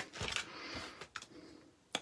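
Quiet handling of paper on a craft table: a faint soft rustle with a few light ticks, then a sharp click just before the end.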